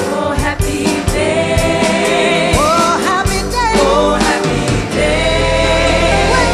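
Live gospel music: a female lead singer and a gospel choir singing over piano, bass and drums.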